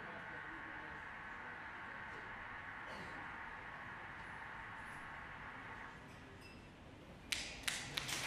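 A faint sustained synthesizer drone, several steady high tones held together, dies away about six seconds in as the piece ends. A few sharp single claps follow near the end as applause begins.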